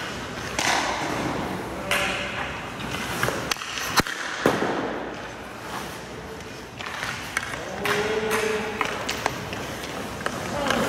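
Hockey skate blades scraping and carving on the ice in several short swells, with a sharp crack about four seconds in, the loudest sound, and a lighter one half a second after.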